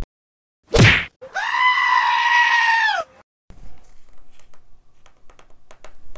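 A short whoosh, then a loud goat-like bleat sound effect lasting about two seconds that bends down in pitch as it ends. Afterwards a few light clicks and taps.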